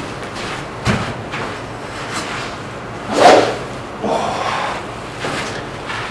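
A TaylorMade M1 driver swung hard through the air, a swish about three seconds in, with a short thump about a second in.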